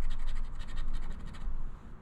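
Fast, even scratching strokes on a scratch-off lottery ticket as the coating is rubbed off the doubler box, fading toward the end.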